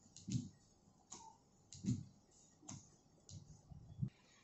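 Car windshield wipers with new frameless rubber blades sweeping across the glass, a faint thump with a click at each turn of the stroke, about every three quarters of a second.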